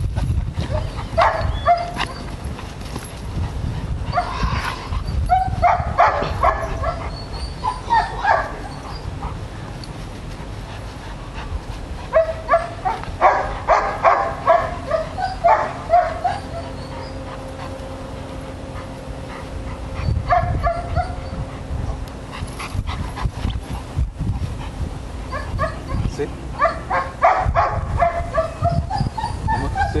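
Dog barking in several runs of short, repeated barks spread through, with pauses between the runs.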